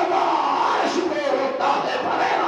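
A man's loud, impassioned voice chanting a line of Urdu naat poetry into a microphone, in long phrases whose pitch rises and falls.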